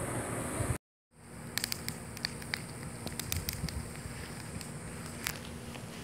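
Wood fire in a stone fire pit crackling, with irregular sharp pops and snaps over a steady low rush, starting after a brief silent break.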